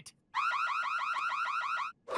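Cartoon crime-alert device alarm: a rapid run of rising electronic chirps, about eight a second, starting a moment in and cutting off suddenly near the end.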